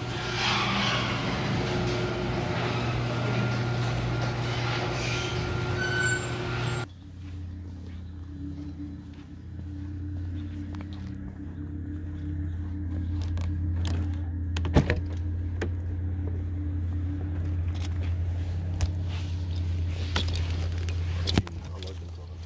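For about the first seven seconds, a garage door opener's motor runs with a loud, steady mechanical hum. It cuts off abruptly, and a car engine idles with a steady low drone, with a few sharp clicks near the middle and near the end.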